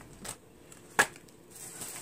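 Items and packaging being handled in a cardboard subscription box, with one sharp click about a second in.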